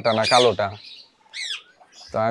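A parakeet gives one short high call that falls in pitch, about one and a half seconds in, just after a man stops speaking.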